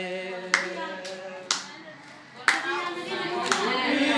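A group of people singing together, accompanied by hand claps at roughly one a second; the singing fades briefly midway and picks up again with a clap.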